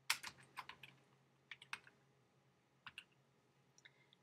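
Typing on a computer keyboard: a quick run of keystrokes in the first second, then a few scattered single keys.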